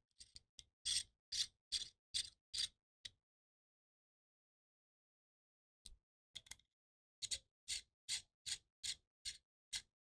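Small L-shaped hex key turning small screws into an air rifle's plenum block: a run of light, evenly spaced ticks, about two or three a second, then a pause of a few seconds and a second run of ticks.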